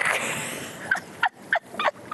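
Water splashing briefly at the start, then a quick run of short, high whoops from people in a pool, about three a second.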